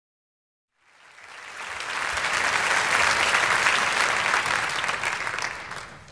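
A concert audience applauding: dense clapping that fades in after a moment of silence, swells and then dies away near the end.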